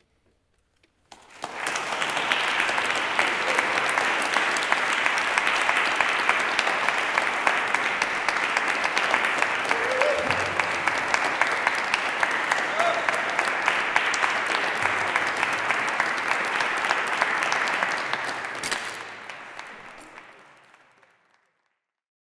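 Audience applauding after a live solo cello improvisation. The applause starts about a second in, holds steady, and fades out over the last few seconds.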